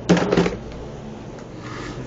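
Brief rustling and clicking of a handheld camera being moved about, in the first half second, then a low steady background hum.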